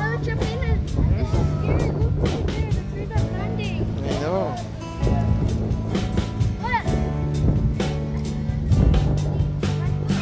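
Electronic dance music playing as the video's background track, with steady sustained bass notes, and short bursts of children's voices over it.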